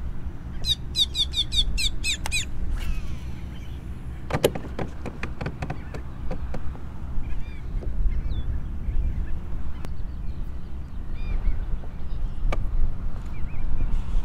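A bird calling in a rapid run of high, falling notes for about two seconds near the start, with fainter calls scattered later, over a steady low rumble. A few sharp clicks come about four seconds in.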